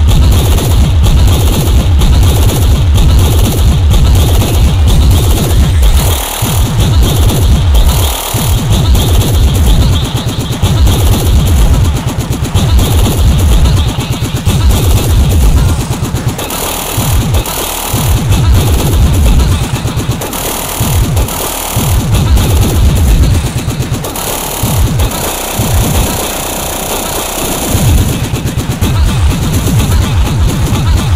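Speedcore/flashcore electronic music: a very fast, dense stream of distorted kick drums under harsh, noisy high-end textures. The kicks drop out briefly several times in the second half.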